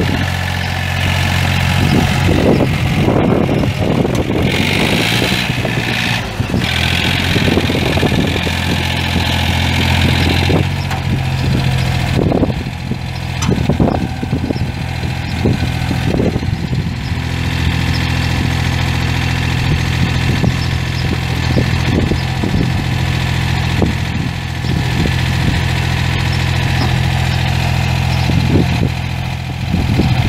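Yanmar three-cylinder diesel engine of a small tracked utility carrier running at a steady speed. Intermittent clanks and rattles sound over it, most of them in the first half.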